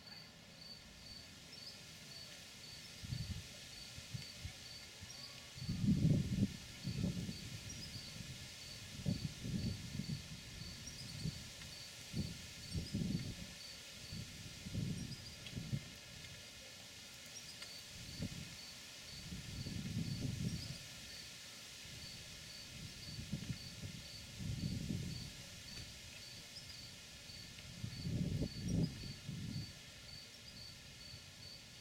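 A cricket chirping steadily, high-pitched, at about three chirps a second, with short pauses. Irregular low rumbles come and go in bursts from about three seconds in and are louder than the chirping.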